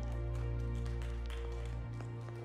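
Live worship band holding a sustained chord that slowly fades, with a few light plucked notes over it; the deep bass note stops just before the end.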